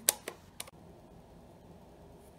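A clear acrylic stamp block being picked up and handled: one sharp click just after the start, two fainter ticks within the first second, then quiet room tone.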